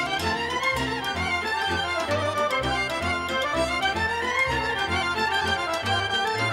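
Instrumental break in a Dobrogean Romanian folk song: a fiddle plays quick melodic runs over a steady bass beat, with no singing.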